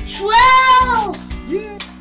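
Background music with acoustic guitar, over which a child's high voice holds one long sung or squealed note that rises and then falls in pitch for about a second, followed by a shorter rising note.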